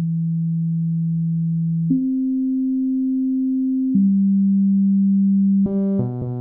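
Aphid DX FM software synthesizer playing almost pure sine-wave notes, three held notes of about two seconds each: a low one, a higher one, then one in between. Near the end a brighter, buzzier note with many overtones comes in as the operator waveforms are switched from sine to saw and ramp.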